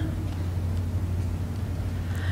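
Room tone with a steady low hum.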